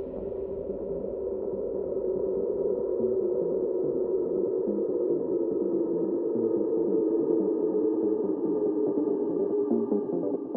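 Psytrance breakdown: a sustained, muffled synthesizer drone with nothing bright on top, slowly swelling louder.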